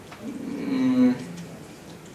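A man's drawn-out hesitation filler, a steady 'eh' held at one pitch for about a second, from a lecturer pausing mid-sentence.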